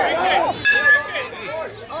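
A metal youth baseball bat striking the ball: one sharp ping about two-thirds of a second in, ringing briefly.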